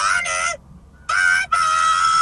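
A high-pitched, squeaky falsetto voice saying "jā ne" and then a drawn-out "bai-bāi" (bye-bye), the last syllable held long at a steady pitch.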